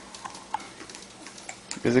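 A few faint, scattered soft clicks while a baby is spoon-fed, then a voice begins speaking near the end.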